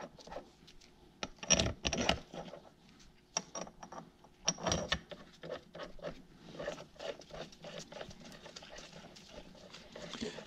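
Bolts and cast-iron parts of a Farmall H hydraulic pump being handled and set in place: scattered light metallic clicks and clinks with handling noise, the loudest around two seconds and five seconds in.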